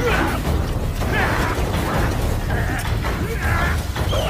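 Sound effects of an animated sword fight. Short metallic scrapes and clashes of blades come about once a second over a steady low rumble of storm wind.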